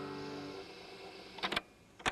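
The last piano chord of a song dies away over the first half second. Then come two sharp clicks close together about one and a half seconds in.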